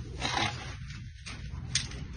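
A brief scraping rustle about a quarter second in, over a low steady hum, then a sharp click near the end.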